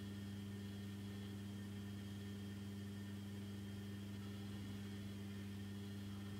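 Steady low electrical hum with a faint hiss underneath, unchanging throughout: the background noise of the recording chain.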